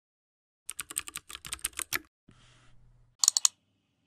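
Typing on a keyboard: a quick run of about a dozen keystrokes, a short pause with a faint hum, then a brief burst of four more keystrokes.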